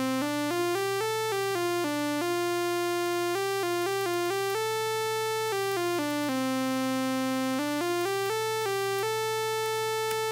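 Max/MSP sawtooth-wave synthesizer playing an unbroken stream of algorithmically chosen notes of a pentatonic scale on middle C, jumping between pitches from middle C up to about the A above. Some notes are held only a fraction of a second and others over a second, at an even level.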